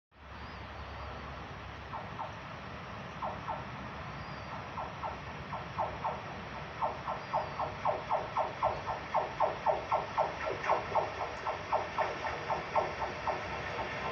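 A Renfe class 465 Civia electric commuter train approaching, heard as a run of short clicks, often in pairs, that grow louder and more frequent as it nears, over a low steady background.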